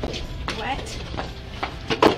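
A horse's hooves knocking on hard ground as it is led out of a stable: a handful of irregular, sharp clops.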